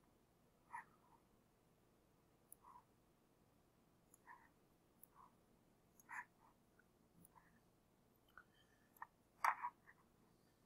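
Near silence broken by about ten faint, scattered clicks of a computer mouse, the loudest pair near the end.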